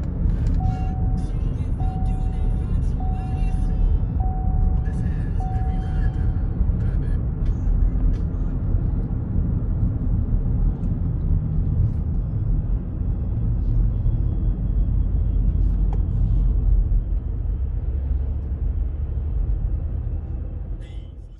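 Steady low rumble of road noise inside a moving car's cabin. Early on, five short, evenly spaced beeps sound about a second apart, then stop.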